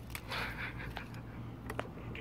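Handling noise from a small plastic quadcopter being picked up and turned over by hand: a brief rustling scrape, then a few light clicks in the second half.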